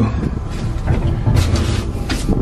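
Passenger lift running with a low rumble, and a short clatter about one and a half seconds in.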